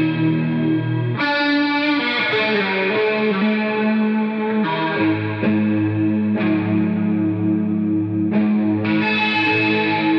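Improvised heavy-metal electric guitar on a Gibson Flying V, played through distortion and chorus effects. New sustained notes and chords are struck every second or two and left to ring.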